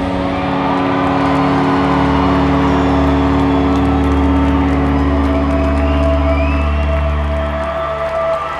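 Live rock band holding a final chord: electric guitar and bass notes sustain steadily for several seconds, a deep bass note joining about two seconds in, then cut off near the end.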